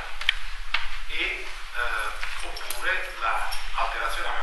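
A man lecturing in Italian.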